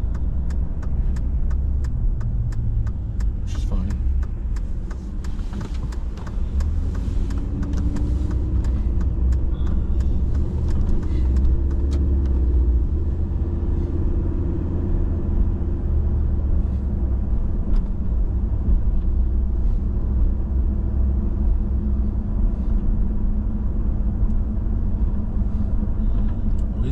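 Car interior road noise while driving: a steady low rumble of engine and tyres heard inside the cabin.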